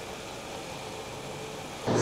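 Mercedes-Benz CLA 180's 1.3-litre turbocharged four-cylinder engine idling just after start-up: a faint, steady running sound.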